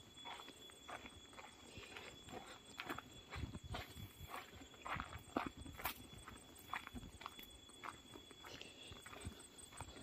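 Faint footsteps of a person walking down a dirt footpath: irregular soft steps about one or two a second.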